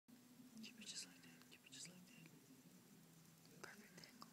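Very quiet whispering: a couple of short breathy whispers in the first two seconds and another near the end, over a faint low murmur of voices.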